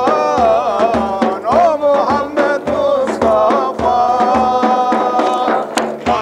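A group of men singing an Islamic hymn (ilahi) together, accompanied by large frame drums beaten in a steady rhythm. A long held note comes in the second half.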